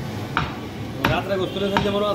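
A large curved butcher's knife chops beef on a wooden stump block: sharp single chops with gaps of well under a second between them.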